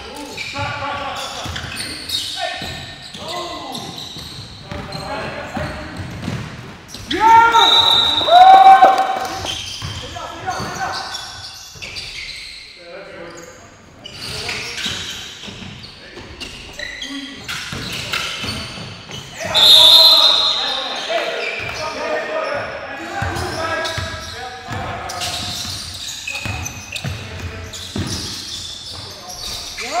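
Basketball game in an echoing gymnasium: the ball bouncing on the hardwood floor amid players' indistinct shouting. Two loud bursts of shouting come about seven and about twenty seconds in.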